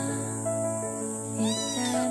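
A month-old tabby-and-white kitten meows once, briefly, about one and a half seconds in, a short call that rises and falls; the kitten is very tense in its new surroundings. Soft music plays throughout.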